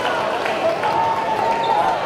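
Gymnasium ambience during a basketball game: a steady wash of crowd chatter and voices around the court.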